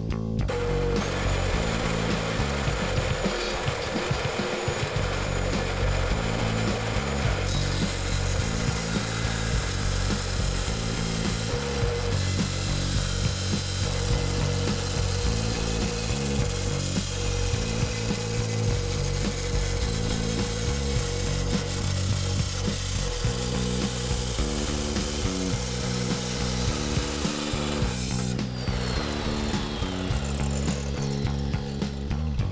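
Abrasive cut-off wheel of a DeWalt chop saw cutting through a metal intercooler pipe. It grinds steadily with a constant motor whine from about a second in, then the motor spins down near the end. Background music with a bass line plays underneath.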